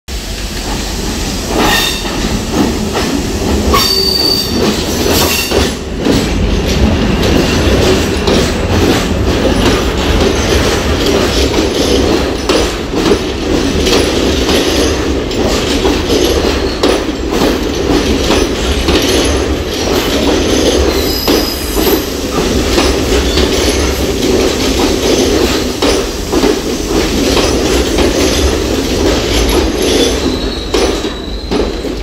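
Diesel multiple unit train running past along the platform: a steady rumble of wheels on rail, with repeated clicks over the rail joints and a few brief high-pitched wheel squeals.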